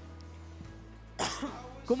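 Quiet sustained background music over a pause. A little after a second in comes a short, sudden cough-like burst, followed by a brief voice sound.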